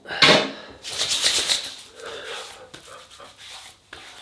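Hands rubbing aftershave cream over the face and beard: rough rubbing strokes about a second apart, strongest at first and fading after about two seconds.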